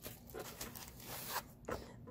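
Faint rustling and scraping as kit items are handled and the microphone is pulled out of a cut-foam box insert, with a few short scrapes.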